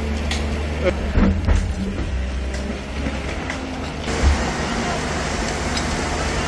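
A heavy earth-moving machine's diesel engine running steadily, with a few short knocks about a second in and again past the middle.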